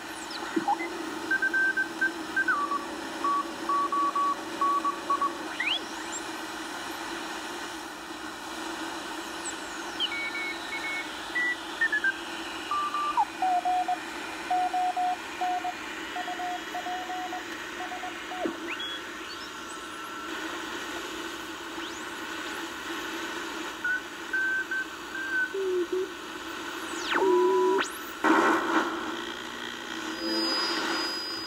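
A solid-state-converted BC-455-B shortwave receiver is tuned across the band and played through an amplified speaker. Static hiss runs throughout, whistles sweep up and down in pitch as the dial passes signals, and Morse code signals beep on and off at several different pitches.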